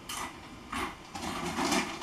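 Bag of chips crinkling and chips being crunched while eating: a few short crackling bursts.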